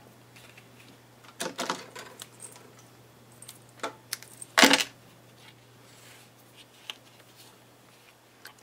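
Soft rustling and small clicks of Baker's twine being wrapped around a cardstock card and handled. A little before five seconds in comes a short sharp snip, the loudest sound, as scissors cut the twine. A faint steady low hum runs underneath.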